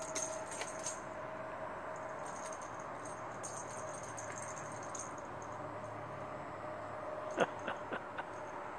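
Plastic cat toy ball with a noisemaker inside, jingling and rattling lightly as it is batted and rolls. The jingling comes in the first second and again from about two and a half to five seconds in.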